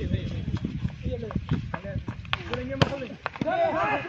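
A volleyball being struck by players' hands: a few sharp slaps, the loudest two a little past the middle, among players' shouts.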